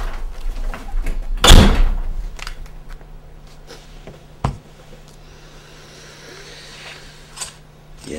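A door slams shut about a second and a half in. A single sharp click follows a few seconds later, over a low steady hum.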